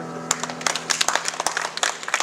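A small audience breaks into applause about a third of a second in, the claps coming thick and uneven, while the last held chord of the backing music fades under it.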